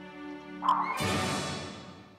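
Background music breaks off about a second in with a loud cartoon hiccup from a little girl, followed by a noisy ring that fades away over the next second.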